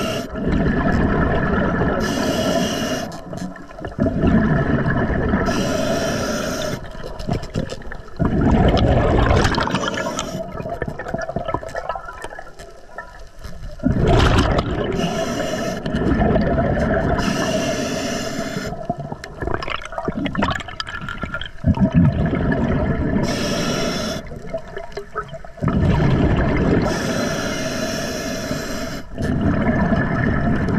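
A scuba diver breathing through an Atomic regulator: a short hiss on each inhalation, then a rush of rumbling exhaust bubbles on each exhalation, about one breath every four seconds.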